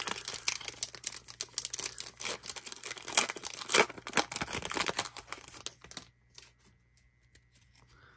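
Foil wrapper of a Panini NBA Hoops trading-card pack being torn open and crinkled: a dense crackle for about six seconds, then only a few faint rustles.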